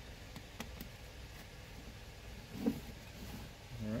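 Faint clicks and knocks of a plastic syringe and bottle being handled, over a low steady hum, with one short low sound about two-thirds of the way through.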